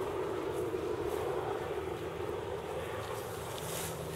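Steady wind noise on the microphone, an even rushing hiss without a break.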